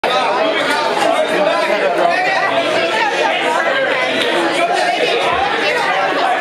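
Crowd chatter: many people talking over one another at once in a crowded room, with no music playing.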